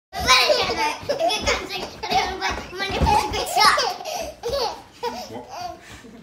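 A young boy chanting loudly in a high voice, with a baby laughing along.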